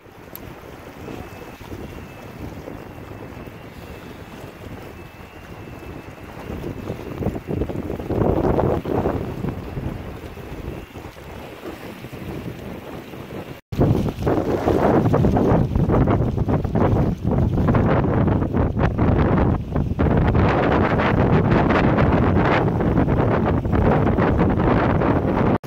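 Wind buffeting the microphone over the wash of choppy river water. The wind is moderate at first, with a stronger gust about eight seconds in. After an abrupt cut about 14 seconds in it is much louder and stays strong.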